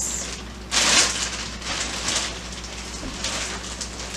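Plastic bags crinkling and rustling as bagged groceries are handled and shifted, loudest for about a second and a half starting just under a second in, then softer, irregular crackling.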